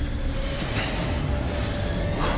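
A steady low rumbling noise with no clear pitch and no distinct hits, such as a rumbling sound-effect bed in an edited trailer soundtrack.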